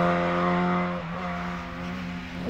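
1963 Austin Mini Cooper race car's engine running at steady high revs, one constant pitch, fading about a second in as the car pulls away.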